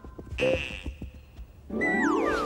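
Cartoon soundtrack effects: a sudden hit about half a second in with a held high ringing tone, then near the end a loud musical burst with falling, whistle-like glides.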